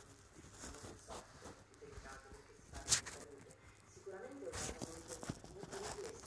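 Distant, muffled voice of a person speaking in a conference room, with a sharp click about halfway through and a few softer knocks near the end.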